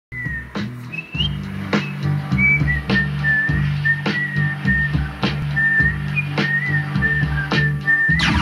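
A song on FM radio: a whistled melody over a steady bass line, with a drum hit a little more than once a second, heard through a home stereo's speakers.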